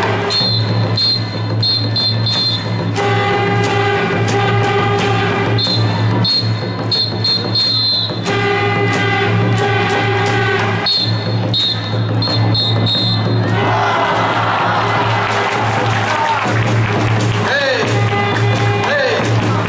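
Ballpark cheering music with crowd voices, a short phrase of held tones repeating about every two and a half seconds. About fourteen seconds in, the pattern breaks into a noisier wash of crowd sound.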